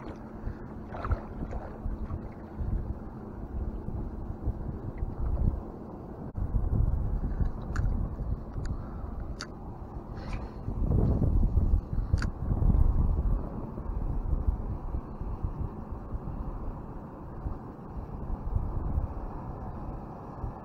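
Wind buffeting the microphone in gusts over water lapping against a small boat's hull, with a few sharp ticks near the middle.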